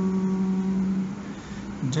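A man's voice singing, holding one long steady note on the end of a line, then dipping in pitch just before the next phrase begins near the end.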